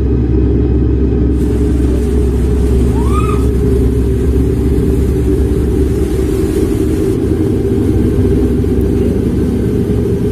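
Steady, loud low rumbling drone of a horror-film soundtrack, with a brief tone rising and falling about three seconds in.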